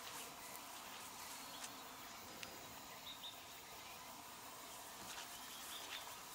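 Faint outdoor insect buzzing and chirping, with a few short high chirps and scattered soft clicks.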